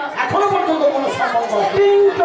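A performer's voice speaking loudly in stage dialogue.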